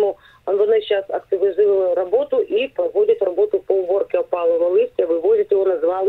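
Speech only: a woman talking over a telephone line, her voice thin and cut off in the highs.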